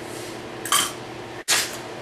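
Copper tongs stirring pickle granules into warm water in a ceramic crock pot, with a short scrape against the pot a little under a second in. The sound drops out for an instant about one and a half seconds in, and another short noisy scrape follows.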